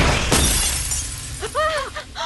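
A glass shattering: a sharp crash just after the start. Near the end comes a short high pitched sound that rises and falls.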